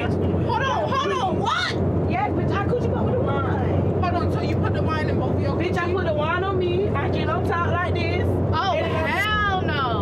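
Several women talking and exclaiming over one another, with a steady low hum of a jet aircraft cabin underneath.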